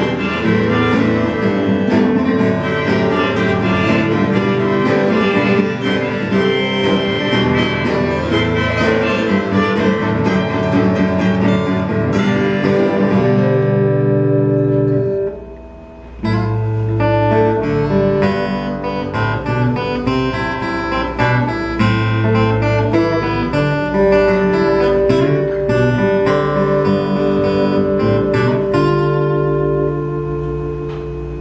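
Two acoustic guitars playing a song live. The music drops away for about a second halfway through, then resumes.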